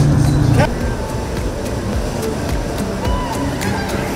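A steady low hum cuts off suddenly just under a second in. After it, a motor yacht cruises past, its engine mixed with faint voices and music.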